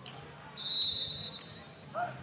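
A whistle blown once, a single high, steady blast of just under a second starting about half a second in. Faint voices and a couple of sharp knocks sound alongside it.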